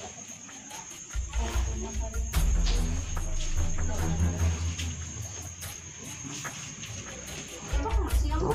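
Steady high-pitched trill of night crickets, with a low rumble starting about a second in; the trill cuts off near the end.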